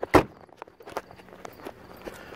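Footsteps on pavement, with one sharp knock just after the start and a few lighter ticks after it.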